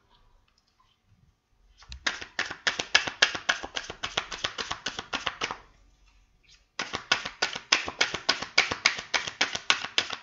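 A deck of tarot cards being shuffled by hand: a rapid, even run of card clicks, about seven a second, in two bursts separated by a short pause a little past the middle.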